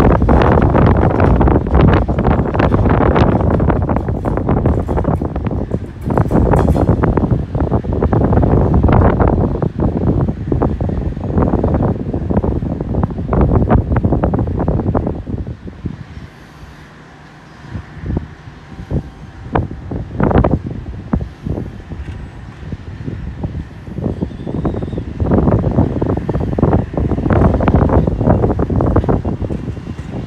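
Wind buffeting the microphone in loud, irregular gusts, dropping to a lull just past halfway where a faint steady hum shows through before the gusts pick up again.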